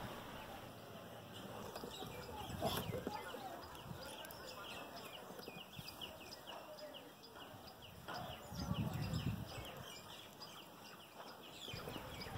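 Faint birdsong: many short, quick chirps repeating, with a brief low rumble about three-quarters of the way through.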